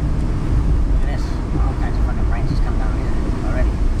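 Steady low rumble inside a moving car's cabin, with indistinct talk from the people in the car over it. The audio is played back a quarter faster than normal, so the voices sound raised in pitch.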